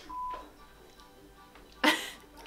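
A short, steady high beep a fraction of a second in, over faint background music, then quiet until a woman bursts out in one sudden loud laugh just before the end.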